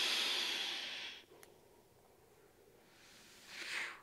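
Air hissing through the Vaptio Solo F2 vape pen as it is drawn on: turbulent and on the loud side. It fades out about a second in, followed by a faint click. After a pause, a softer breathy exhale comes near the end.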